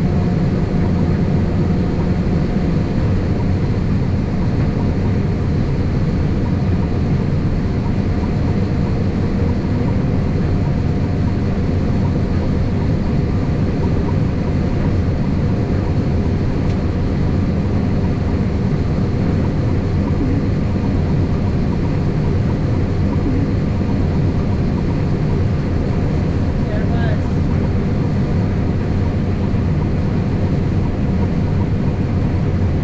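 Combine harvester running steadily under load while cutting soybeans, heard from inside the cab: a constant low drone of engine and threshing machinery. Early on its unloading auger is running, emptying beans into a grain cart alongside.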